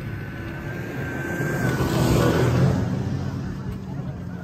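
A snowmobile engine running, with a low steady hum and a thin whine, swelling to its loudest a little after halfway as the machine passes close, then easing off.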